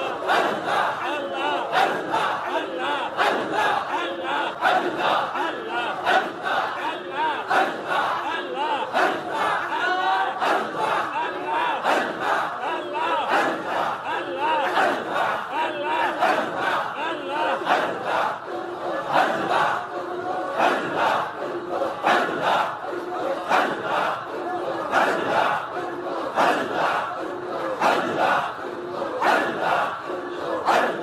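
A large congregation of men chanting zikr together, many voices in loud, rhythmic repeated calls with a steady pulse.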